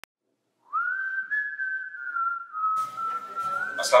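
A single whistled note that slides up about two-thirds of a second in, then holds and drifts slowly lower in pitch. A soft music bed comes in under it later on.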